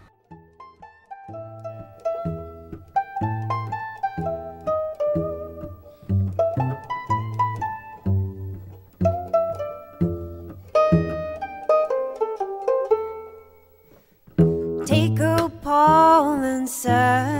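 Instrumental opening of a recorded folk song: a plucked string instrument picks a melody over regularly repeating low bass notes. The music drops almost to silence about two seconds before the end, then comes back louder and fuller.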